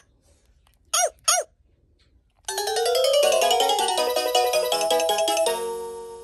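VTech Rattle and Sing Puppy baby toy playing electronic sounds through its small speaker: two short chirps about a second in, then a tinkling tune with notes running up and down together, ending on a held chord that fades.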